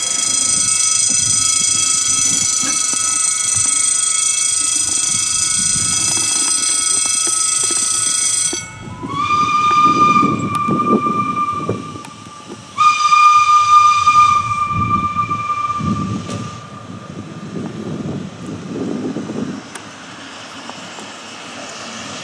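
Steam whistle of the Mallet No. 403 metre-gauge steam locomotive blowing two long blasts of about three seconds each, the first sliding slightly up in pitch as it starts, with a low rumble underneath. Before them, a long steady high-pitched tone with many overtones sounds for about eight seconds and cuts off abruptly.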